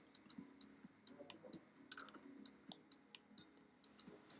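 Light, irregular clicking at a computer, several clicks a second, as charts are clicked through and changed.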